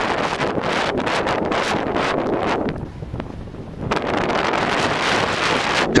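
Air rushing over the camera's microphone with crackling, rustling buffeting as the balloon payload drops after the balloon has burst. It eases for about a second around three seconds in.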